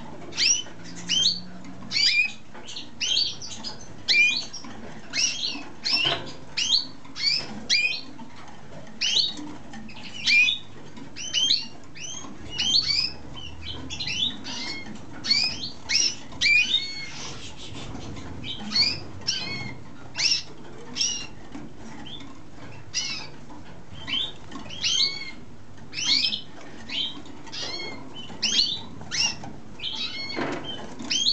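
Male mosaic canary chirping in a long series of short, sharp, sweeping notes, one or two a second, with brief pauses between them.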